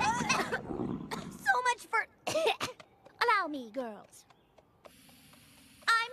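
A cartoon dragon's rumbling snore tails off, then cartoon characters make a string of short non-verbal vocal sounds, several sliding down in pitch, before it goes quiet.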